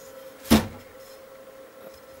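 A single metal clunk about half a second in as the hinged chassis of a vintage valve amplifier unit is swung open and handled on the bench.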